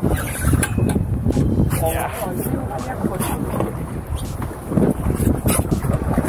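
Wind buffeting the microphone on a small boat at sea, a gusty low rumble with water washing against the hull. A few sharp knocks sound through it.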